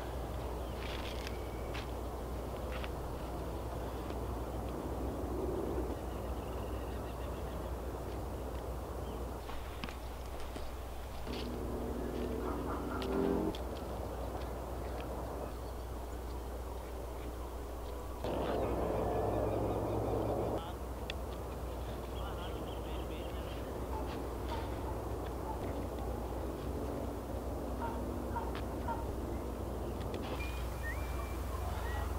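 Outdoor ambience with a steady low hum and scattered light ticks. Two brief spells of pitched calls break in, one about a third of the way in and a louder one about two thirds of the way in.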